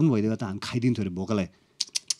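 A man talking, then after a short pause a quick run of short, sharp clicks near the end.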